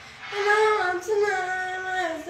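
A woman singing a wordless melody, coming in about a third of a second in with long held notes that slide downward.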